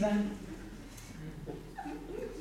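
A woman's amplified voice trails off in the first moment, then only faint scattered voice sounds and room tone in a hall.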